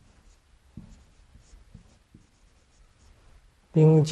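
Dry-erase marker writing a word on a whiteboard: faint short strokes. A voice starts just before the end.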